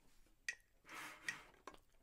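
Metronome clicking at 75 beats per minute, two clicks in this stretch, with a soft breath drawn about a second in.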